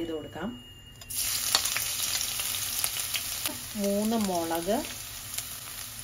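Grated ginger and garlic tipped into hot coconut oil with whole spices, sizzling: the sizzle starts suddenly about a second in and then runs steadily, with scattered small crackles.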